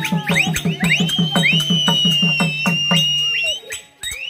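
Therukoothu folk accompaniment: a drum beaten evenly about five strokes a second, under a high, piercing wind instrument. The wind instrument glides up in short calls, then holds one long high note. Drum and pipe stop together just before the end.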